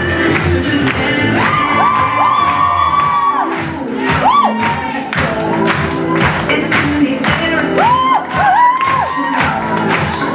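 Pop music with a steady beat played over a loud cheering crowd, with high whooping calls rising and falling about two seconds in, again around four seconds, and near the end.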